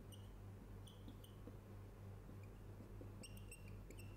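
Near silence: room tone with a steady low electrical hum and a few faint, short high-pitched squeaks, one near the start, one about a second in and a cluster near the end.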